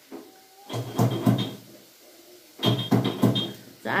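A person coughing in two quick runs of about four coughs each, one about a second in and one near three seconds.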